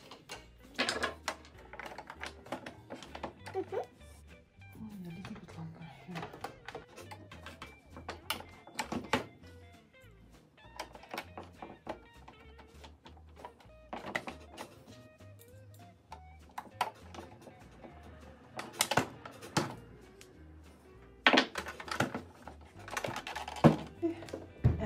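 Background music under handling noise: sharp clicks and knocks of a Singer Tradition sewing machine's plastic back cover being fitted and screwed down with a screwdriver, the loudest knocks near the end.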